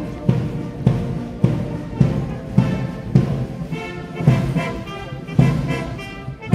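Guards military marching band playing a march: a bass drum on every beat, a little under two strokes a second, with brass instruments carrying the tune. The brass grows louder in the second half.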